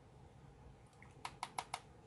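Four quick, light clicks in a row, about six a second, a little past the middle, from a makeup brush and a plastic loose-powder jar being handled as powder is picked up from the lid.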